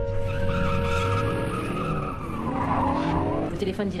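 A car driving off hard: a tyre squeal in the first second or so, then the engine revving up, rising in pitch.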